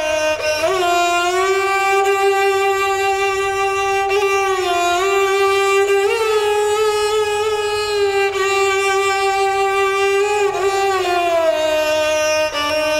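Background music: a solo violin playing a slow melody of long held notes joined by sliding changes of pitch.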